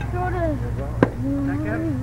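Children's voices calling out on the ball field in long, drawn-out cries, with one sharp knock about a second in, over a steady low hum.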